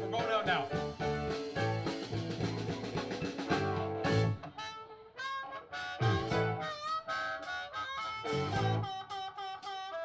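Live blues band playing, led by a harmonica solo over electric guitar, bass, drums and keyboard. The band thins out about halfway through, leaving sparser harmonica and guitar phrases.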